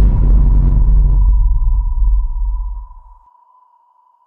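A deep cinematic boom sound effect whose low rumble dies away over about three seconds, with a thin, steady high ringing tone held above it that fades out near the end.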